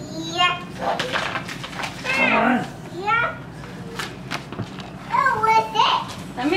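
A toddler's voice making several short, high-pitched wordless sounds and babble while she plays with her toys, with a few light clicks in between.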